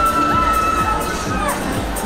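Riders on a swinging fairground thrill ride screaming, one long held scream ending near the end, over the ride's loud music with a steady beat.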